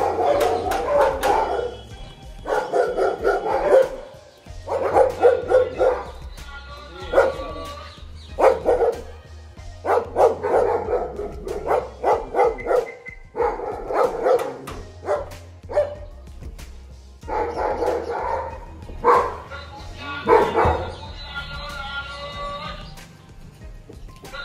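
A dog barking in repeated bouts of quick barks, over background music.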